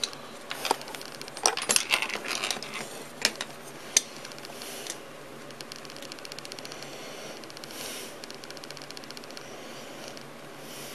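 Small screw hardware being handled and fitted by hand. A run of light clicks and rattles in the first half gives way to a faint, fast, even ticking as a part is turned onto its thread.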